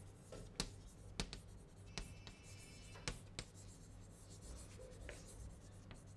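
Chalk writing on a blackboard: a series of sharp, irregular taps and short scrapes as letters are written, over a faint steady low hum.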